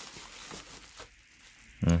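Bubble wrap crinkling and rustling as a hand digs through it in a cardboard box. It dies away about a second in.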